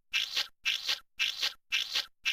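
Cartoon spraying sound effect as a stream of cheese sauce is squirted: a hissing spurt repeated about twice a second, four times over.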